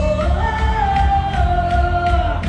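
Rock band playing live, with a woman's voice holding one long sung note that rises near the start and is then held, over bass guitar, drums and electric guitar, picked up from within a concert-hall crowd.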